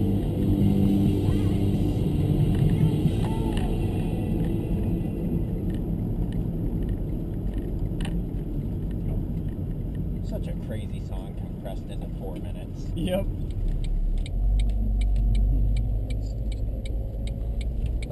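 Engine and road noise inside the cabin of a moving Ford Transit work van, with voices under it in the first few seconds. In the second half come a run of clicks and knocks and a deep rumble as the camera is handled and picked up.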